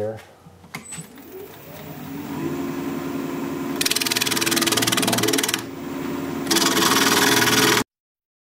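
Jet 1840 wood lathe motor spinning up to speed with a rising hum and then running steadily. A gouge cuts the spinning burl cherry blank in two loud, hissing passes, rounding over the tailstock end. The sound cuts off abruptly near the end.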